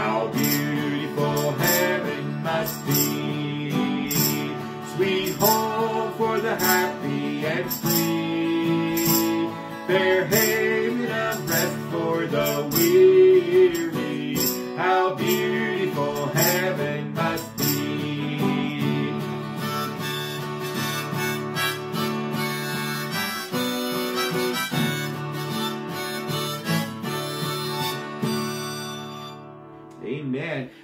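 A harmonica playing a gospel hymn melody over a strummed acoustic guitar, with tambourine jingles marking the beat. The music winds down just before the end.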